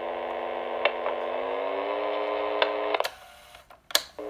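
The speaker of a Sony M-2000 microcassette transcriber gives a steady, pitched drone for about three seconds, which cuts off with a sharp click. A second click of a control button follows about a second later.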